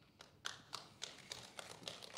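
Faint, irregular taps and knocks, about half a dozen short ones spread unevenly, in a quiet room.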